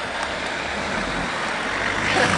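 A car driving, with a steady rush of road and wind noise.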